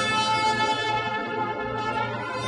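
Instrumental music with sustained, held notes.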